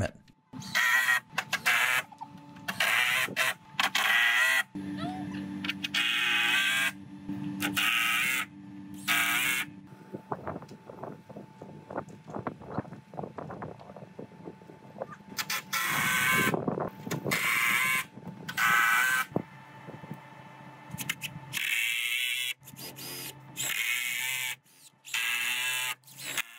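Sped-up work-site audio: short bursts of high-pitched, chipmunk-like talk from the people putting up the deck boards, with a steady hum for several seconds and a run of clicks and knocks in the middle as boards are handled and fastened.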